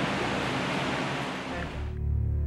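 Steady hiss of room noise picked up by the camera's microphone, fading out over the last half-second as a background music track fades in.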